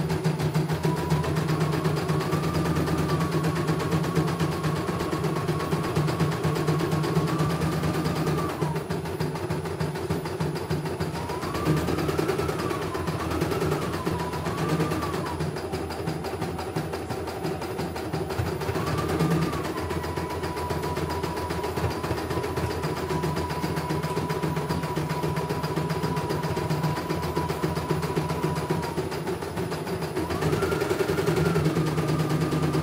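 CNY E900 computerized embroidery machine stitching a design: a fast, even run of needle strokes under a thin motor whine that steps up and down in pitch several times as the hoop moves.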